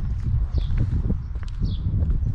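Footsteps on a pavement and a heavy low wind rumble on the handheld camera's microphone, with two short high chirps about half a second in and near the end.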